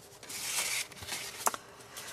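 Cardstock gift card holders rustling and sliding against each other and the paper underneath as they are handled: a brief soft rustle under a second in, then a single sharp tap about a second and a half in.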